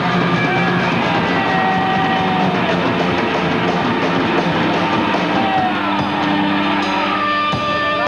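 Rock band playing live: electric guitars and drum kit, with long held lead-guitar notes that bend up and down in pitch.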